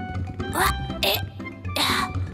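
Cartoon background music with a steady bass line, with three short comic sound effects laid over it, timed to a cartoon fox climbing a small wooden step ladder.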